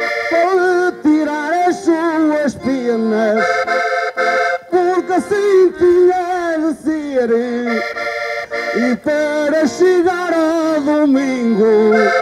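Accordion playing a traditional Portuguese desgarrada (cantares ao desafio) accompaniment in held chords, with a man's singing voice winding over it.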